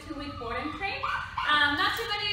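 A woman's voice sounding continuously, with bending pitch and some long held notes.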